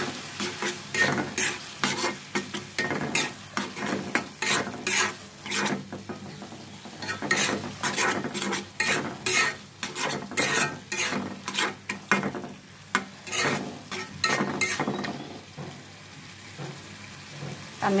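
A steel spoon stirring and scraping a thick, cooked-down tomato bhaji in a black pan, the food sizzling over the heat. The scrapes come in irregular strokes, one or two a second, easing off briefly a few times.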